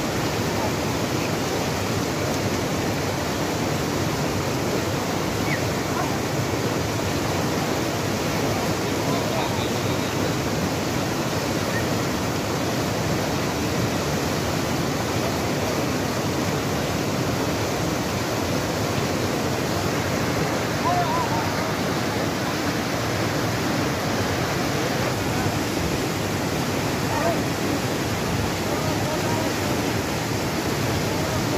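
A fast, silt-laden mountain river in spate rushing over stones close by: a loud, steady roar of white water that never lets up.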